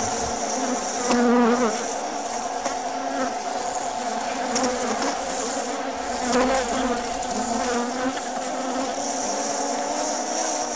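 A steady buzzing drone, swelling and wavering about a second in and again a little after six seconds.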